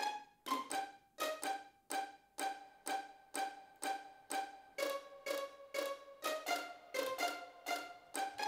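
Sampled string instruments playing back a repeating pattern of short, quickly decaying string notes, about three a second, with reverb on them.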